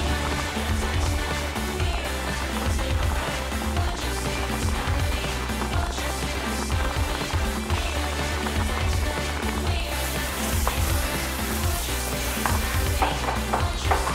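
Background music with a steady bass line over a pot of spicy jjamppong broth boiling and sizzling with sliced beef brisket.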